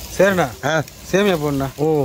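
A person speaking in several short phrases, with only speech clearly heard.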